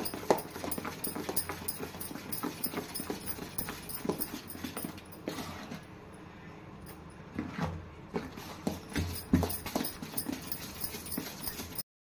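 A spoon beating thick urad dal batter by hand in a steel vessel, with quick rhythmic wet slaps and clicks of the spoon against the metal. The beating eases off around the middle while the batter is lifted, then a few more strokes follow. The batter is being whipped to aerate it so the vadas come out soft.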